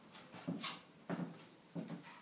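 A few light knocks and taps as a card and objects are handled on a plastic table, with a small bird chirping short falling whistles in the background.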